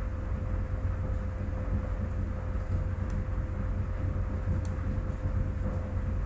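Steady low electrical hum with a thin steady tone above it, the background noise of a desk recording setup. Two faint computer mouse clicks come about three seconds and four and a half seconds in.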